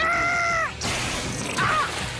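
A cartoon character's high, held yell lasting under a second and dropping in pitch as it ends. It is followed by a burst of noisy crash sound and a brief squeal near the end.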